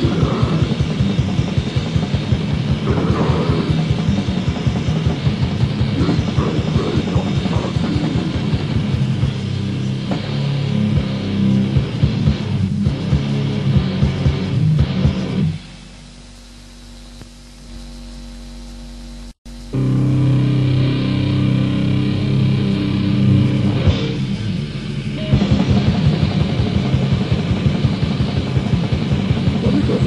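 Old-school Finnish death metal demo recording: heavily distorted guitars and bass over fast drumming. About fifteen seconds in, the music drops to a quieter held passage for about four seconds, then the full band comes back in.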